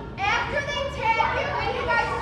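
Young children's voices, several talking and calling out at once.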